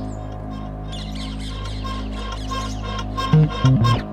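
Instrumental passage of a hip-hop/R&B song without vocals: a held low bass note under short high notes repeating over and over, with a few low drum hits near the end.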